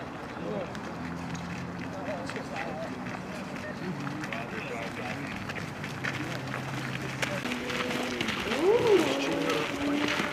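Many boots tramping on a gravel road as a column of Marines marches, under indistinct overlapping talk among them. A voice calls out louder about nine seconds in.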